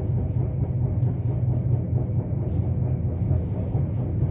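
Nuriro electric multiple-unit passenger train running, heard from inside the carriage: a steady low rumble with a few faint clicks, as the train approaches a station stop.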